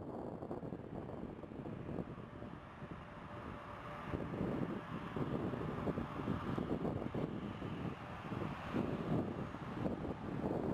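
Bombardier CRJ regional jet's twin rear-mounted turbofans running at takeoff thrust on the takeoff roll, a rough, rumbling noise that grows louder about four seconds in. Heavy wind buffets the microphone throughout.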